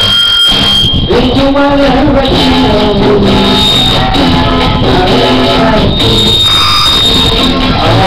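Loud karaoke music with a man singing along into a handheld microphone.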